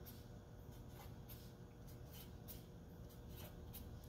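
Faint scratching of a felt-tip permanent marker writing on a sheet of paper: a series of short, irregular strokes.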